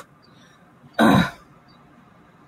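A woman clearing her throat once, a short harsh burst about a second in.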